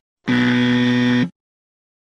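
Buzzer sound effect: one steady, flat electronic buzz lasting about a second.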